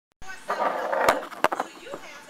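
Indistinct voices in a restaurant dining room, loudest in the first second, with a click as the sound starts and a few sharp knocks around the middle.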